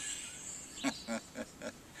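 A man laughing quietly: a run of short, breathy chuckles about four a second, starting about a second in.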